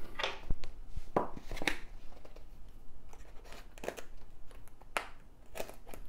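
Dull hobby-knife blade cutting through kit packaging: a handful of short scraping, tearing cuts with some crinkling, spread over the few seconds.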